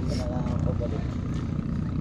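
A steady low rumble with faint people's voices over it.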